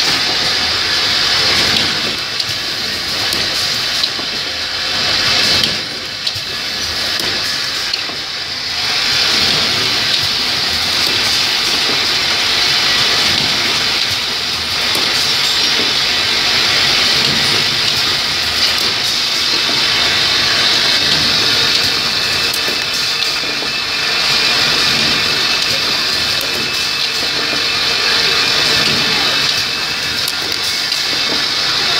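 Automatic lighter assembly machinery running: a steady loud hiss with many small clicks and rattles from its pneumatic actuators and parts feeder.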